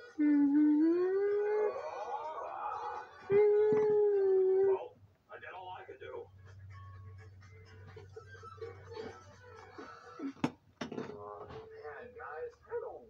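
A dog howling twice: the first howl rises in pitch, and the second is held level for about a second and a half, starting about three seconds in. After that there are faint voices and a single sharp click near the end.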